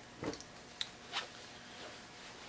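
Faint rustling and a few short soft handling noises as fabric is gathered and dropped aside.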